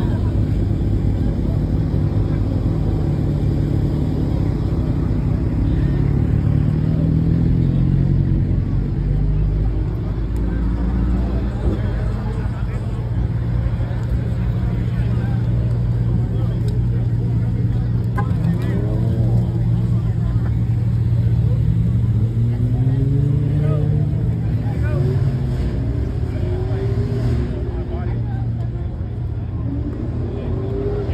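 Low, steady rumble of car engines idling, with a crowd of people talking over it.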